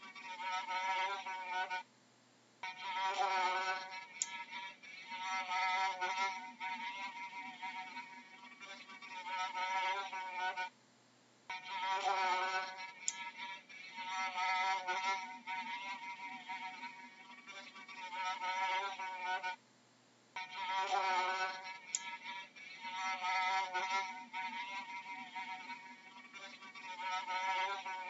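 Housefly buzzing in flight, its wingbeat hum wavering in pitch as it moves. The same stretch repeats about every nine seconds, with a short gap each time.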